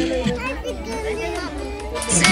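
Several children and adults chattering and calling out over one another, with music faintly underneath.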